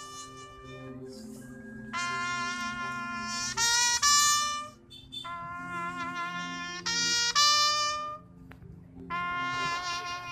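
A lone brass horn sounding a slow funeral salute call: long held notes separated by short breaths, several of them stepping up to a higher note.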